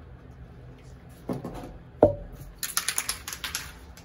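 Two light knocks of small objects set down on a table, then about a second of quick rattling clicks, like the mixing ball inside a spray paint can as the can is shaken before spraying.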